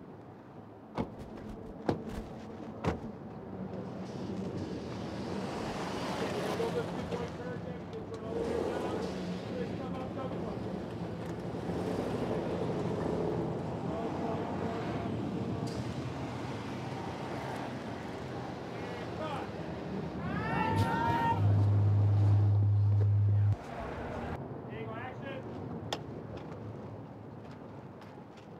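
A convoy of Chevrolet SUVs driving slowly past, engine and tyre noise building for about ten seconds, with distant voices calling out now and then. Past the middle, a steady low drone comes in for about two seconds and is the loudest sound.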